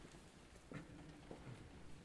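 Near silence with faint footsteps on a stone floor and light shuffling as choir singers change places.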